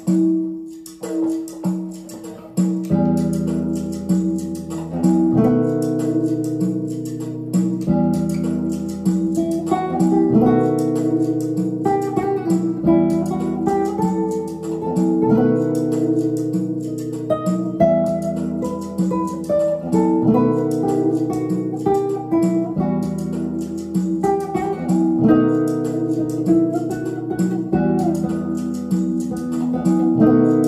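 Cordoba F7 Paco nylon-string flamenco guitar, fingerpicked in changing chords. The chords start about three seconds in, over a looped tambourine rhythm playing back from a looper pedal.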